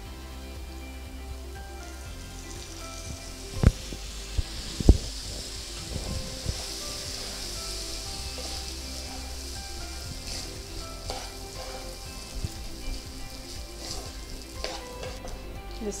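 Food sizzling in a hot kadai on a gas stove as it is stirred with a spatula; the sizzle builds after a few seconds. Two sharp clicks of the spatula striking the pan come about four and five seconds in.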